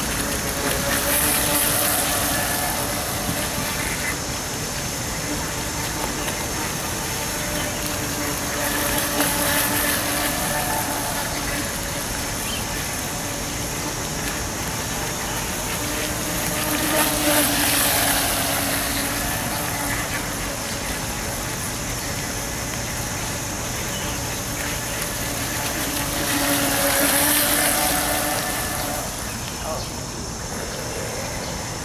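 Radio-controlled speedboat's motor whining with the hiss of spray as the boat makes high-speed passes on a pond; the sound swells four times as it comes close, near the start, around a third of the way, just past halfway and near the end.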